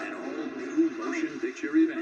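Animated-film trailer soundtrack playing through a television's speaker: music with voice-like sounds that bend up and down, and a few quick rising sweeps.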